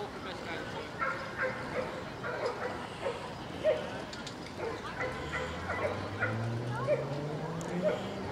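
A dog yipping and whining in short, high cries that repeat every half second or so. In the second half a low hum rises steadily in pitch.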